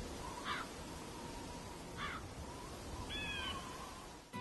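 Gulls calling three times over a low, steady rush of wind and sea: two short rising calls, then a longer call of several pitches near the end.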